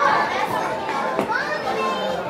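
Indistinct chatter of several voices, with a light pitch-gliding voice or two rising over the murmur.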